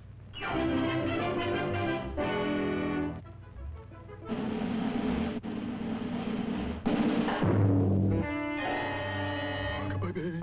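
Orchestral cartoon score with timpani and brass, playing in short phrases that change every second or two. For a few seconds in the middle a dense rushing noise sits under the music.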